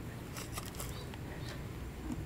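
Quiet outdoor background with a low steady hum and a few faint, scattered clicks.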